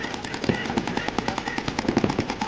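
Several paintball markers firing rapid strings of shots that overlap into a dense, uneven crackle of pops.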